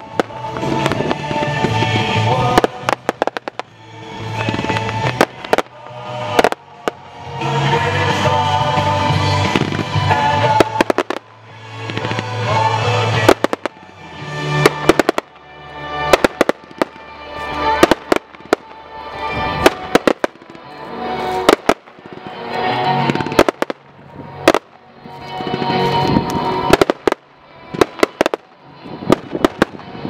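Aerial fireworks going off in quick succession, sharp bangs and crackles scattered all through, over loud music that swells and falls every couple of seconds.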